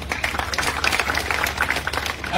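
A crowd applauding, many hands clapping together in a dense clatter.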